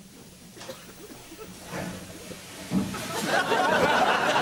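Studio audience laughter, quiet at first and then breaking out loudly about three seconds in, just after a sudden low thump.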